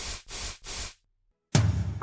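A small spray bottle spritzed three times: three short, quick hisses. About a second and a half in, a louder sound cuts in.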